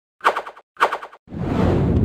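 Logo-intro sound effects: two short bursts of rapid rattling clicks, each loud at first and then fading, then from about halfway in a loud, swelling rush of noise as the logo appears.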